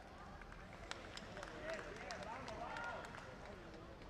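Indistinct voices in a large hall, with a scatter of sharp clicks.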